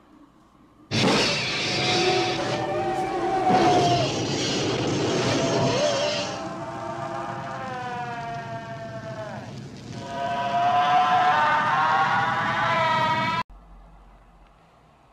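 Film sound effects of a flamethrower firing and flames burning, mixed with the high, shrieking squeals of a monster. The loud blast starts suddenly about a second in. Later the squeals take over as layered wavering tones that sweep down and then rise again, before everything cuts off abruptly near the end.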